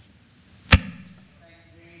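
A single sharp, loud thump close to the microphone, very brief, followed by a voice starting to say "thank you".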